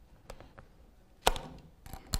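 Hands working a laptop without a mouse: a few faint key or touchpad clicks, then one sharp knock a little over a second in.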